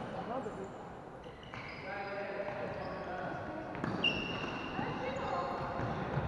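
Floorball play on a wooden sports-hall floor: players calling out, with short sneaker squeaks and a sharp knock about four seconds in, all echoing in the hall.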